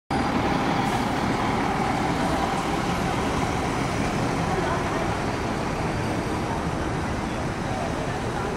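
Steady street traffic noise with a bus passing close, loudest in the first couple of seconds, under the voices of people nearby.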